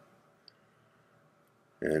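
A pause in a man's speech: near silence with one short, faint click about half a second in, then his voice starts again near the end.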